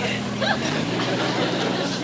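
A PT boat's engines running with a steady drone, just set going by someone backing into the starter. The note changes slightly under a second in.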